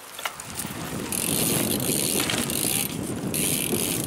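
BMX bike rolling on asphalt: rough tyre noise with a mechanical ticking from the rear hub, getting louder about a second in and then holding steady.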